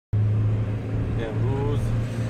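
Steady low drone of a car in motion, heard from inside the cabin while driving on a highway, with a brief faint voice about a second in.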